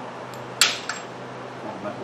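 A sharp metallic clink about half a second in, then a fainter one, as the steel bearing and collar are handled on a mower's front caster fork spindle.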